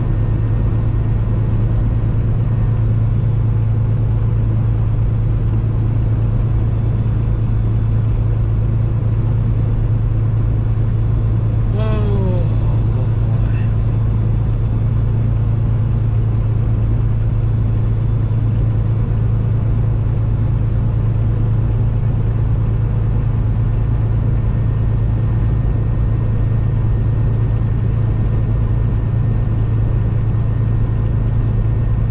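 Steady low drone of engine and road noise inside a truck cab cruising on the highway, with a brief falling tone about twelve seconds in.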